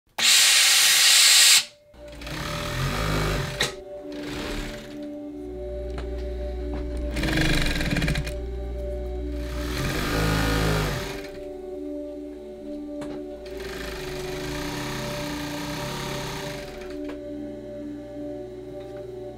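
A loud burst of steam hissing from a steam iron at the start, then background music over several short runs of a sewing machine stitching.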